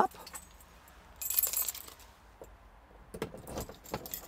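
A bunch of keys jingling about a second in, then a few sharp clicks near the end as a key is put to the lock of an add-on bolt lock on a van's cab door.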